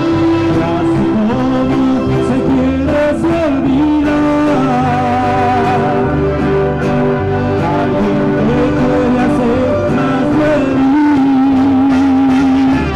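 A man singing a mariachi-style song into a microphone over amplified band accompaniment, holding long notes with a wavering vibrato. A long held note comes near the end.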